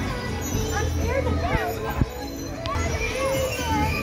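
Din of children shouting and playing in a busy trampoline park, over background music, with a single thump about halfway through.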